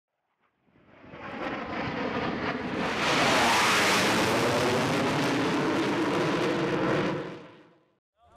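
Jet aircraft engine noise fades in about a second in, is loudest around the middle, then fades out near the end.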